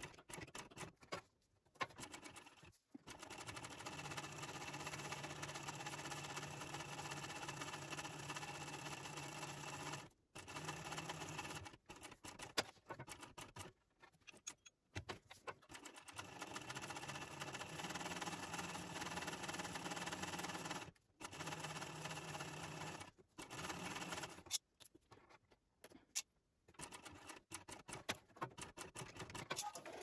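Techsew 2750 Pro industrial cylinder-arm sewing machine stitching along a bag strap, running in stretches of a few seconds with brief stops between them.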